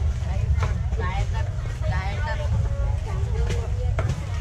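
Market chatter: several people talking, with no single clear voice, over a steady low rumble and a few sharp clicks.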